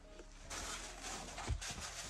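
Black plastic bag rustling and crinkling as a pair of sneakers is pulled out of it, with a soft knock about one and a half seconds in.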